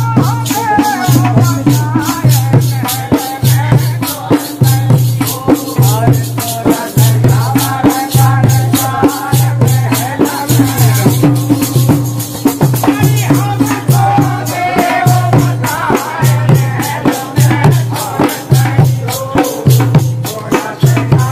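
Holi faag folk song: several men singing together to a dholak drum beaten in a steady, fast rhythm, with a shaken brass jingle instrument rattling on every beat.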